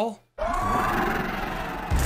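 Television drama soundtrack playing after a brief dropout: a steady low rumble under sustained, slightly wavering tones, with a heavier low surge at the end.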